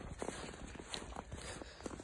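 Footsteps in snow: a walking person's shoes crunching through the snow, several irregular steps.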